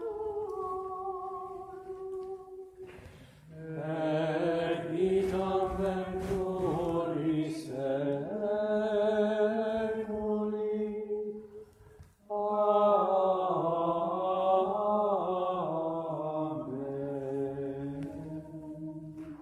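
Latin liturgical chant sung by a choir in long held phrases, with a short break about three seconds in and another about twelve seconds in.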